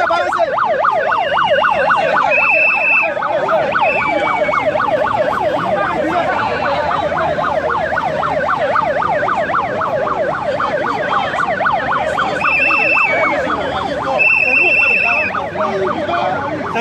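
Siren wailing in rapid rising-and-falling sweeps, several overlapping, cut through by short, high, steady whistle blasts: three in the first five seconds and two more near the end.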